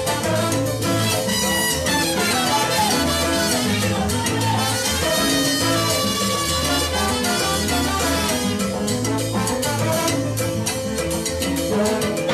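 Live salsa band playing an instrumental passage, with trombones and saxophone holding chords over keyboard piano, a repeating bass line and timbales.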